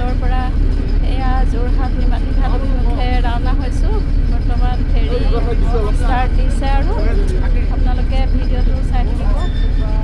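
Steady low drone of a river ferry's engine while under way, with people talking over it.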